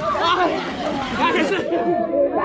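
Many children's voices chattering and calling out over each other at once, a loud overlapping babble with no one voice standing out.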